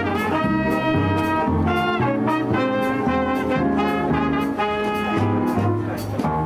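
Jazz big band playing live: saxophones, trumpets and trombones sounding full ensemble chords over double bass and guitar, with a steady beat.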